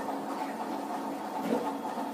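Marker pen writing a word on a whiteboard over a steady background hiss.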